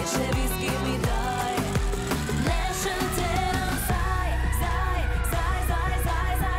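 Live pop music with a woman singing over a steady drum beat; about four seconds in, a sustained deep bass comes in.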